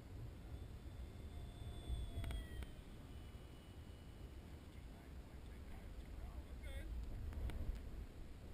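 Faint whine of the HobbyKing Stinger 64's electric ducted fan on a high-speed pass, its pitch sliding down as it goes by, over steady wind rumble on the microphone. A few sharp clicks come in the middle and near the end.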